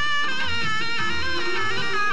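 Instrumental passage of a 1960s Hindi film song, with no singing. A sustained, reedy wind melody with small pitch bends plays over low hand-drum beats about every half second.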